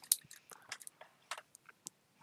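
Faint, scattered small clicks and ticks, irregular and a few to a second.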